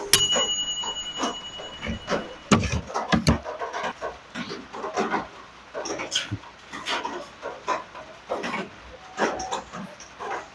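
A woman laughing under her breath in short, irregular bursts. A high steady electronic beep sounds over the first couple of seconds.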